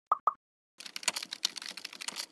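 Two quick pops, then a fast run of computer-keyboard typing clicks: a typing sound effect as text is entered into an animated search bar.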